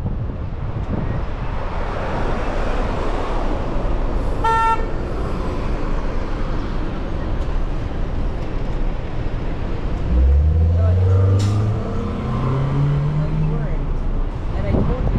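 Street traffic and wind noise heard from a moving vehicle, with one short car horn toot about four and a half seconds in. Near the end an engine revs up, its pitch rising for a few seconds.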